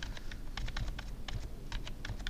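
Computer keyboard keys clattering in quick, irregular taps.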